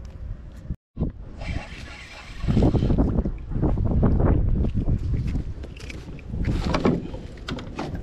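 A fish being reeled in and landed from a plastic kayak: a spinning reel cranking, splashing at the surface, and knocks and rubbing on the hull, with wind buffeting the microphone. The sound drops out for a moment near the start.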